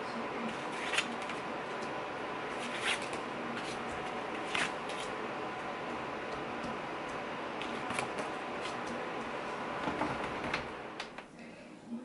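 Small sheets of paper being handled and pressed down on a desk tray: a few light taps and rustles, about five, over a steady background hiss.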